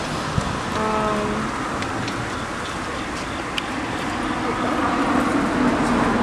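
Outdoor street ambience: a steady wash of traffic noise with people talking indistinctly nearby.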